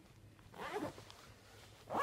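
Zipper on a soft fabric lunch bag rasping in a short pull about half a second in, followed by another brief rasp of the bag being handled near the end.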